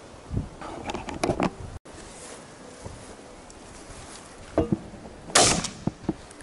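A few short, sharp knocks and rustles as a shotgun is handled and raised in a hedgerow hide, the loudest near the end.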